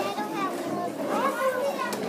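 Children's voices talking and chattering in the background of a busy classroom.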